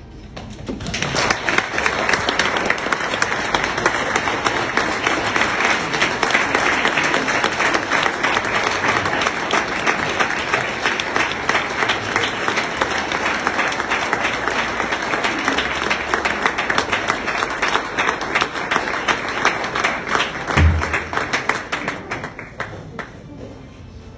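Audience applauding, starting about a second in and keeping up steadily, with a single low thump near the end.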